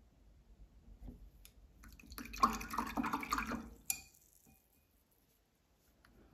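Paintbrush being rinsed in a glass jar of water to clear out the red gouache: swishing and clinking for about two seconds, ending with a sharp tap that briefly rings, about four seconds in.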